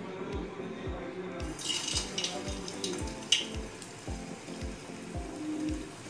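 Dal batter dropped by hand into hot oil in a kadhai, sizzling and crackling from about a second and a half in, with a sharp pop a little after three seconds. Background music with a steady beat plays throughout.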